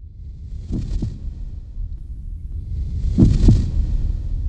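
Heartbeat sound effect: two lub-dub double beats about two and a half seconds apart, over a low rumble that swells.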